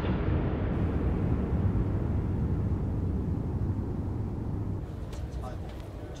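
A low, dense rumble that slowly fades, with a few faint clicks near the end.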